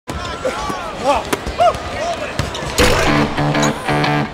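Basketball being bounced on an outdoor court, with short pitched squeaks and shouts from the players. About three seconds in, music with plucked guitar notes starts.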